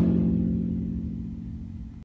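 Concert bass drum ringing out after a single stroke with a wooden drumstick: a low, steady tone slowly fading away.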